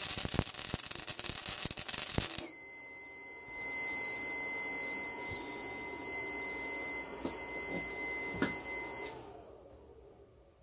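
Small gasless MIG welder's arc crackling and spitting for about two and a half seconds, then cutting out suddenly. A steady high-pitched electronic beep follows until near the end: the 12 V to 240 V inverter's fault alarm, the inverter taking the welder's draw for a short circuit.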